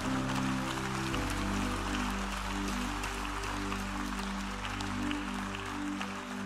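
Congregation applauding over soft worship-band music: sustained chords over a low bass note that changes about a second in.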